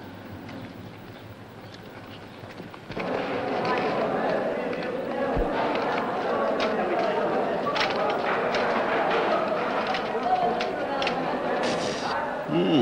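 Mess-hall hubbub: many people talking at once, no words clear, with scattered clinks and clatter of plates, bowls and cutlery on trays. It starts suddenly about three seconds in, after a quieter room tone.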